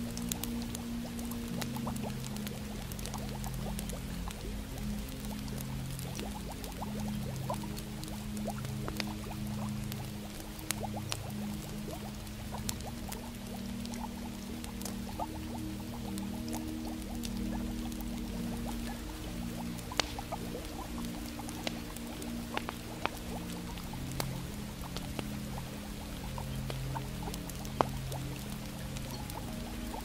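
Slow ambient music with long held low notes, over the steady crackle of a log fire with scattered small pops. There is a louder pop about twenty seconds in and another near the end.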